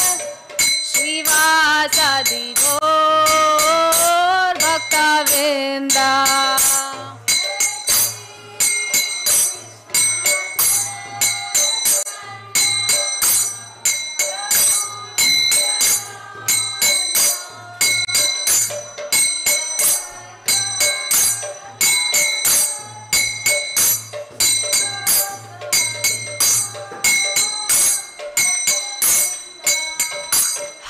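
A woman singing a devotional chant for the first several seconds. Then rhythmic strikes of small hand cymbals (kartals), about two to three a second, over a low pulsing beat and faint singing.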